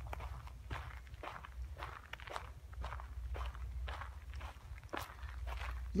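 Footsteps walking at a steady pace on a forest trail of dry pine needles and packed dirt, about two crunching steps a second, over a low steady rumble.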